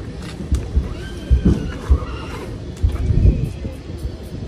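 A horse whinnying once, a wavering call from about a second in that lasts a second and a half, over low thumps.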